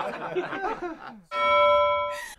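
Women laughing, then a little over a second in a bell 'ding' sound effect starts abruptly and holds for about a second: the cue for a point scored, since laughing gives the other player a point.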